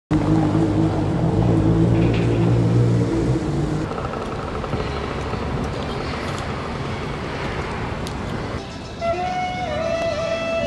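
City street traffic: a steady low engine hum for the first few seconds, then a general haze of passing traffic. Music with a melody comes in near the end.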